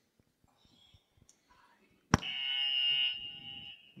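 Quiz buzzer sounding once: a steady tone that starts suddenly about two seconds in and holds for nearly two seconds, signalling a contestant buzzing in to answer.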